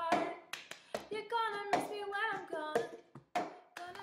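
Cup-song routine: rhythmic hand claps and a cup being slapped and knocked on a tabletop, with a woman singing along in the middle of it.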